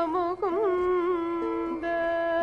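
A woman singing a devotional hymn, drawing out one syllable on held notes with quick rising-and-falling turns in pitch.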